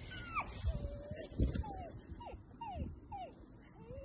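A dog whining: a string of about seven short, high whines that each slide downward in pitch, one held a little longer, with a few soft low thumps underneath.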